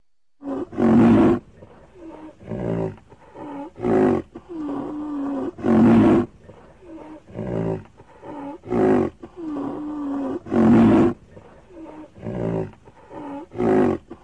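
Dinosaur roar and grunt sound effects: a loud call every second or two, with a few held low moans between them. The sequence seems to repeat about every five seconds, as a loop would.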